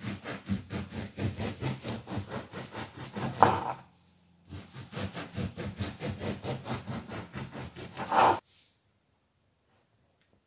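A kitchen knife sawing through a loaf of crusty bread on a wooden cutting board, quick back-and-forth strokes about four or five a second. There are two runs of strokes, one for each slice, and each ends in a louder stroke as the blade goes through the bottom crust.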